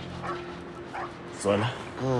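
A dog whimpering and yipping faintly under a steady low drone, with a man's voice near the end.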